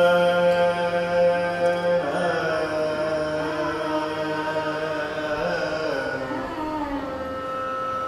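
Carnatic alapana in raga Hindolam sung by a male voice: a long steady held note, then gliding, ornamented phrases, settling on another held note near the end.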